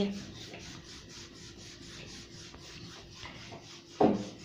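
Rolling pin rolling out a ball of flour dough on a floured board: a soft, steady rubbing as it is pushed back and forth.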